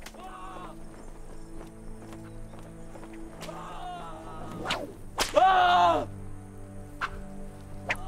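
Whip lashes cracking, each followed by a man's pained cry; the loudest crack and cry come about five seconds in. A low, sustained musical score runs underneath.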